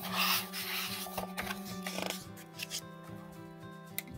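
A paper page of a hardcover picture book being turned by hand: a loud rustle and flap at the start, then softer rustling about a second and a half in. Soft background music with held notes plays under it.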